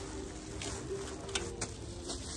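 A pigeon cooing, a low repeated coo, over outdoor street noise, with two sharp crinkling clicks of plastic bags being handled about a second and a half in.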